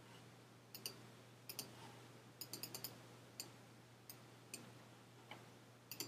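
Computer mouse buttons clicking, a dozen or so faint, sharp clicks, some in quick pairs and a run of several in a row about two and a half seconds in, over a faint steady low hum.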